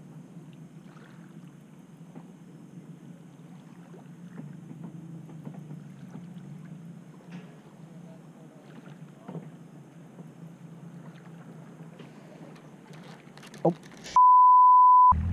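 A steady low hum with a few faint, soft ticks, then a man's short exclamation near the end.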